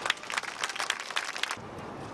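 Audience clapping, many irregular hand claps that cut off abruptly about one and a half seconds in.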